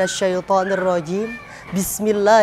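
A man's voice chanting in a melodic, drawn-out style, holding notes and bending them up and down, with a brief lull about two-thirds of the way through.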